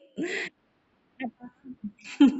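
A short hooting vocal cry from a person, then a few brief quiet voice sounds about a second later, heard through a video call's audio.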